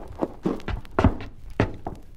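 Radio-drama sound effect of footsteps: a run of heavy thudding steps at an uneven pace, the loudest about a second in.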